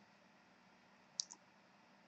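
Near silence, broken about a second in by two faint, short clicks close together.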